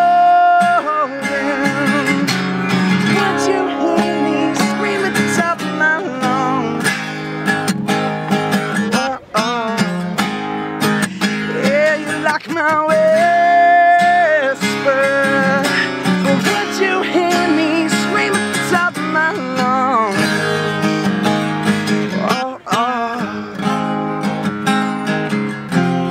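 A man singing over a strummed acoustic guitar, holding long notes at the start and again about halfway through.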